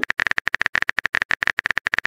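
Rapid keyboard typing-click sound effect, about ten short taps a second, as a text message is being typed in a chat app.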